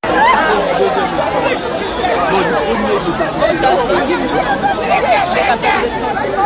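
A dense crowd chattering: many voices talking over one another at once, loud and close, with no single speaker standing out.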